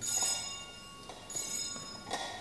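Metal clinks with a ringing tail from a censer (thurible) swung on its chains during the incensing of the elevated host at the consecration. There is one clink at the start and another about a second and a half in.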